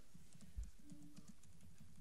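Faint scattered clicks and rustles of papers being handled on a meeting table near the microphones, with one soft low thump about half a second in.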